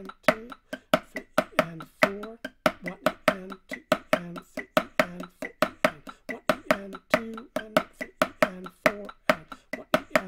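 A drum played with sticks in a syncopated eighth- and sixteenth-note rhythm, about four to five strokes a second. Loud accented strokes stand out against soft ghost notes, each hit with a brief pitched ring.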